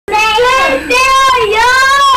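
A small boy's high voice in three long, loud, sing-song calls, the last one rising in pitch.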